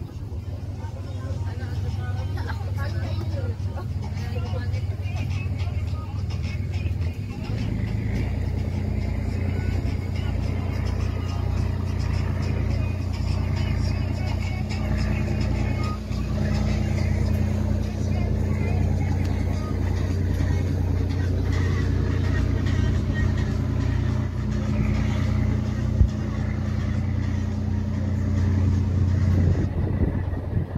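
A nearby motor engine running steadily at a constant speed; its note rises a step and gets louder about seven seconds in, then holds. A single sharp click about 26 seconds in.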